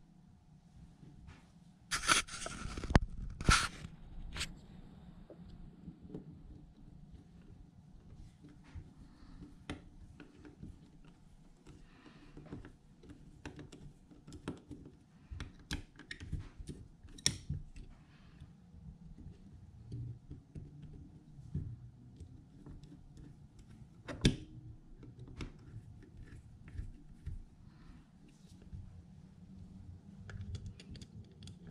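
Hand work on a Solex PICT28 carburetor and its small metal parts on a towel-covered bench: scattered light clicks, taps and rustles of metal parts and a screwdriver, with two louder noisy scrapes about two and three and a half seconds in and one sharp click about three-quarters of the way through.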